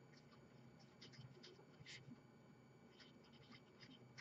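Faint scratching strokes of a felt-tip marker writing letters on paper, a few short strokes in a row.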